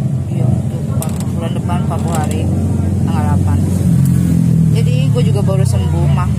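A steady low engine hum runs throughout, with people talking over it now and then.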